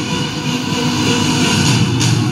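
Three firework fountains (gerbs) spraying sparks with a loud, steady rushing noise and no separate bangs.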